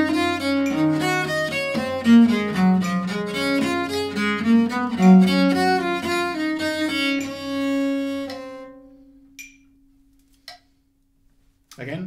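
Bass viola da gamba bowed through a run of quick notes, a fast passage being practised at a slow metronome tempo of crotchet = 55 as one step of a gradual speed-up. The run ends on a held low note that fades away about eight seconds in. Near silence follows, with a couple of faint clicks.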